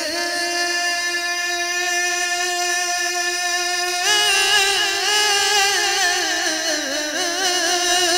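Male voice singing a naat: one long held note for about four seconds, then a wavering, ornamented run up and down in pitch.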